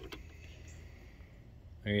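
A couple of faint clicks right at the start from the small plastic wiring-harness connector being unplugged from the factory under-mirror puddle light. After them there is only a low, steady background.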